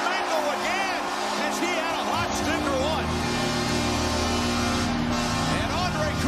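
Arena goal horn sounding in steady held tones over a cheering, clapping crowd, signalling a home-team goal; goal music with a low beat comes in about two seconds in.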